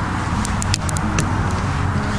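Steady low hum of a motor running, with a few brief high clicks about half a second to a second in.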